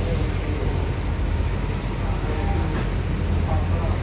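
Busy market street ambience: a steady low traffic rumble with indistinct voices of people nearby.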